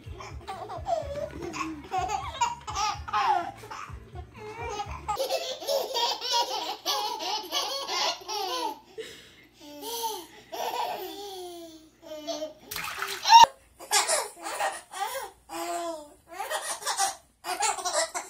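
Twin babies laughing and babbling in short bursts, with a single sharp click about two-thirds of the way through.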